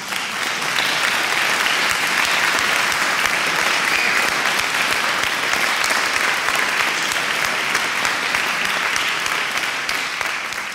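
Audience applauding steadily, a dense, even patter of many hands clapping.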